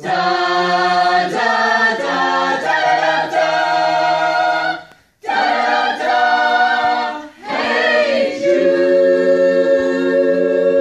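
Small mixed choir singing a cappella in sustained chords, phrase by phrase, with a brief break just after halfway and a long held chord near the end.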